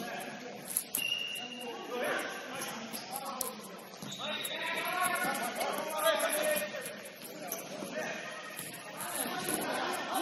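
Futsal players' shouted calls echoing in a large gym during play, with a short high squeak about a second in and scattered ball and shoe sounds on the court.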